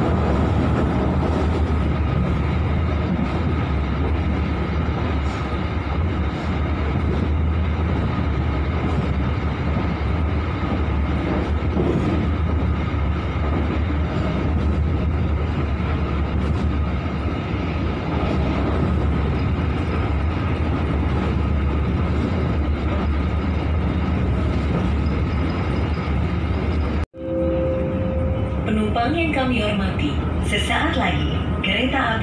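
A passenger train running at speed, heard from inside the coach: a steady, heavy low rumble of wheels on rail with a rushing noise over it. Near the end the sound cuts off abruptly, and a steady tone and the start of the train's public-address chime follow.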